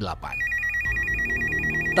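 Electronic telephone ring sound effect: a fast warbling trill that flips between two high tones, starting about a third of a second in.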